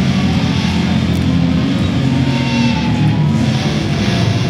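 Heavily distorted electric guitars and bass holding low, sustained chords that change every second or so, with no drums playing.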